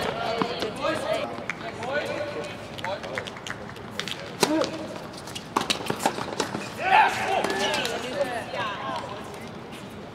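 Tennis balls struck by rackets and bouncing on a hard court: a run of sharp pops a few seconds in, over people's voices, with a loud shout about seven seconds in.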